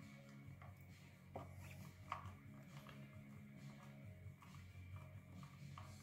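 Near silence: the Jazzmaster's low E string ringing faintly and dying away, with a couple of faint clicks.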